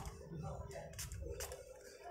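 A few short spritzes from a small pump spray bottle squirting alcohol into the hub hole of a computer power-supply fan's stator, to flush the bearing sleeve, with faint handling noise in between.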